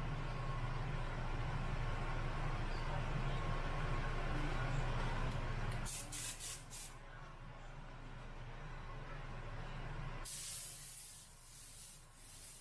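Air compressor running with a steady low hum, stopping about halfway through; then an Omni 3000 airbrush spraying paint, a few short puffs of hissing air followed, near the end, by a continuous spray hiss.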